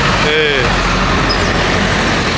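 Bus engine running with a steady low hum amid road noise, with a short voice about half a second in.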